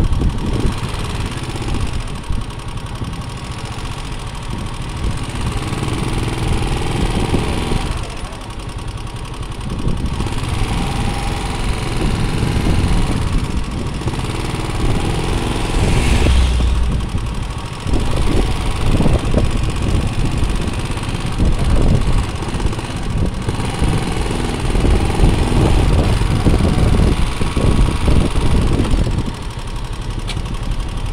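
Motorcycle running on the road, with steady engine noise and uneven low rumble throughout, and a brief stronger low rumble about halfway through.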